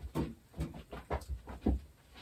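A pet dog close by making a series of short, quiet breathy sounds, several in quick succession.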